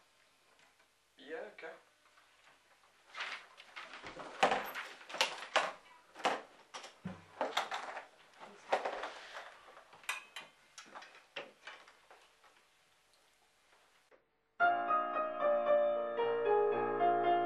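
Irregular clicks, knocks and rustles of handling, with a brief murmur about a second in. Near the end, music with a trumpet and piano starts abruptly and is the loudest sound.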